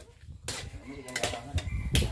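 Metal spatula knocking and scraping in a steel wok as octopus pieces are stir-fried over a wood fire: a few sharp clinks, the last as the spatula is set down near the end.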